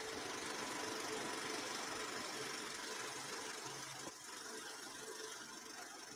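A steady rushing drone with a faint low hum, dipping briefly about four seconds in and then continuing a little quieter.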